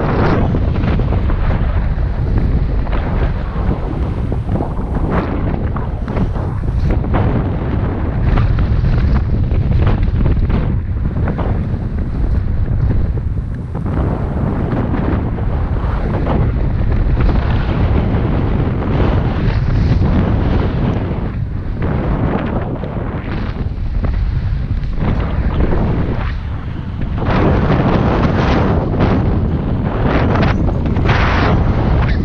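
Loud wind buffeting the camera microphone in paraglider flight: a dense, low rumble of rushing air that surges and eases, with brief lulls about two-thirds of the way through and again near the end.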